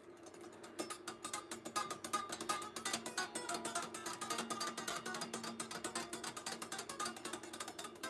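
Electric guitar played quietly: a fast run of picked single notes starting about a second in.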